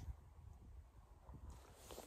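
Near silence: a faint, steady low rumble of light wind on the microphone.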